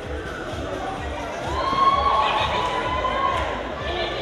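Background music with a steady bass beat; about a second and a half in, a spectator lets out a long, high cheering call lasting nearly two seconds.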